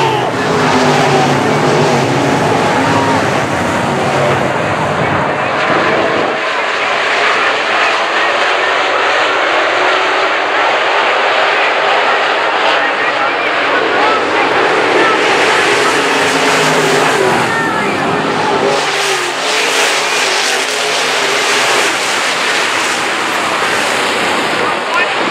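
IMCA dirt-track modified race cars racing around the oval with their engines at speed. The engines are loudest and deepest as the cars pass close in the first six seconds and again near the end, with crowd voices underneath.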